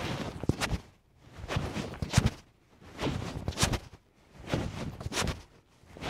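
Karate uniform sleeves swishing and snapping through five repetitions of a low block followed by a center punch. Each repetition gives a burst of cloth rustle ending in a sharp snap, about one and a half seconds apart.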